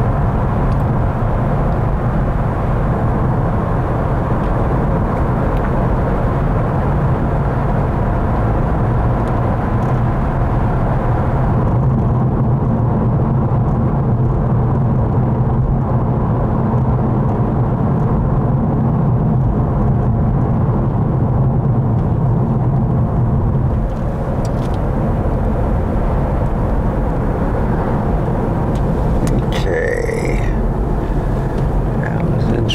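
Steady road and engine noise of a moving car heard from inside the cabin, a continuous low hum and rumble.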